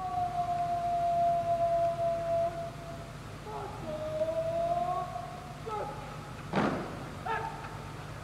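Long, drawn-out shouted words of command from a guard-of-honour commander: two held calls a couple of seconds each. About six and a half seconds in comes one sharp crash, typical of the guard's rifles being brought to the present in unison, then a short shout.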